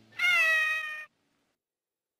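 The MTM Enterprises logo's kitten giving a single meow, about a second long, that rises a little and holds before cutting off.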